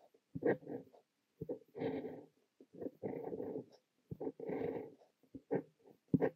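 Fine nib of a Montblanc Le Petit Prince fountain pen scratching across notebook paper while writing Korean characters by hand. The writing comes in separate strokes: short ticks and longer scratches up to about a second, with brief silent pauses between them.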